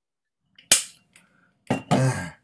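A single sharp pop about two-thirds of a second in, dying away quickly, followed near the end by a louder, rougher burst of noise.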